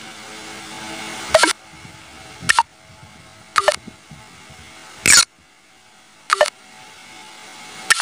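Short click sound effects from a video-editing app's sound library being previewed one after another: six sharp clicks about a second or so apart, over a faint steady hiss.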